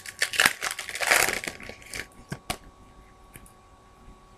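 A Topps Chrome baseball card pack being torn open, its foil wrapper crinkling and crackling with sharp clicks. It is loudest about a second in and dies down to a few faint ticks after about two and a half seconds.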